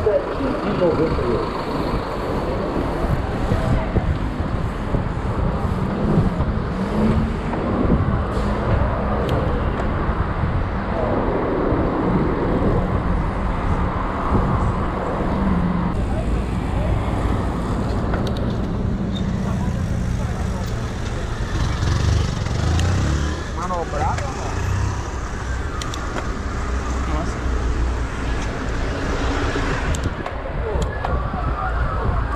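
City street traffic heard from a bicycle riding among cars: steady engine and road noise, with voices now and then.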